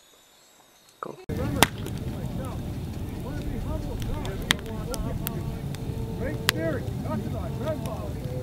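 Near silence, then about a second in a large outdoor wood fire starts up suddenly: a steady low roar with sharp crackles and pops scattered through it.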